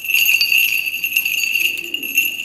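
Small liturgical bells jingling and ringing on without a break, as they are shaken during the incensing before the Gospel.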